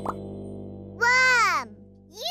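A last short cartoon plop at the very start over a held background music chord. About a second in, a child's voice gives a single falling 'ooh' lasting about half a second.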